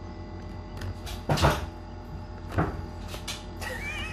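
A few dull knocks over a steady low hum, the loudest about a second and a half in and another about a second later. Near the end a quail chick starts peeping, a high, wavering call.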